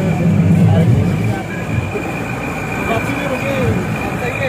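A jeep engine running on a mountain dirt track: a low rumble, heaviest in the first second and a half, under a steady high whine, with indistinct voices in the background.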